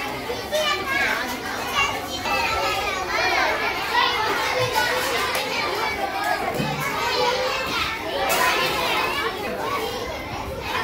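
A large group of children chattering and calling out all at once, many high voices overlapping in a continuous hubbub.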